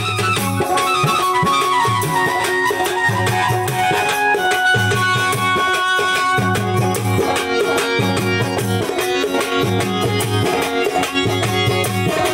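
Live folk instrumental music led by an electronic keyboard, heard through a PA loudspeaker: sustained melody notes over a repeating low beat.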